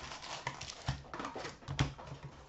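Foil-wrapped trading-card packs being pulled from an opened cardboard hobby box and set down on a glass counter: rustling of packs and cardboard with several light knocks, the loudest near the end.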